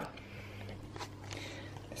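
Quiet kitchen room tone: a low steady hum with a couple of faint clicks.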